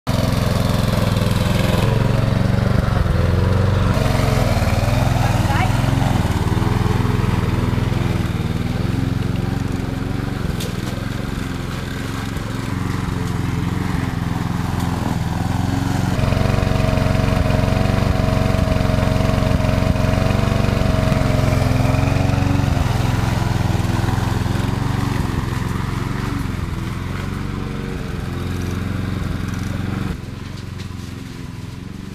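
Walk-behind petrol lawn mower running steadily while it cuts grass, growing louder and quieter twice as it is pushed toward and away.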